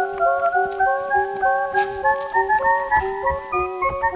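Background music: a light, repeating melody of short plucked or keyboard-like notes over a held low note, with a soft regular beat.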